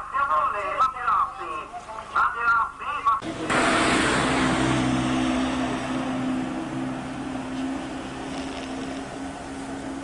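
A man's voice speaking briefly. About three seconds in, a motor vehicle's engine sound starts suddenly: a steady hum with noise over it, fading slowly.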